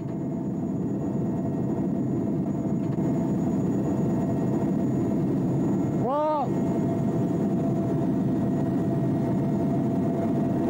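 Steady engine and rotor noise of a military helicopter heard from on board, even and unbroken, with a brief voice cutting through about six seconds in.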